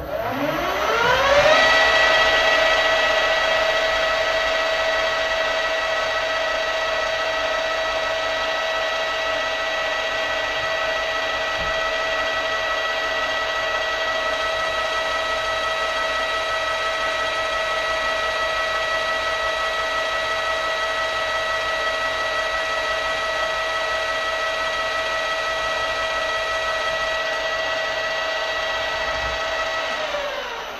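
Metal lathe starting up with a rising whine, then running at a steady speed with a high-pitched motor and drive whine while it turns brass stock. The whine begins to fall away right at the end as the spindle is switched off.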